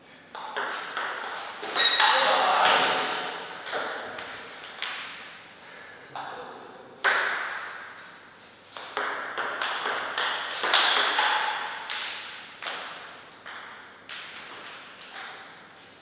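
Table tennis ball struck back and forth in two rallies: a run of sharp, ringing clicks as the ball hits the paddles and the table, with a short lull between the rallies.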